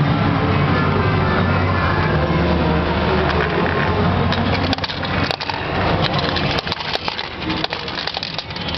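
Fruit machine sounds over a steady low hum. From about halfway, a run of sharp metallic clicks and clinks, coins dropping into the payout tray.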